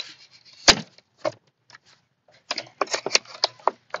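Folding knife cutting open a cardboard-and-plastic blister pack: a sharp snap about three quarters of a second in, then a run of short scratchy cuts and crackles in the second half.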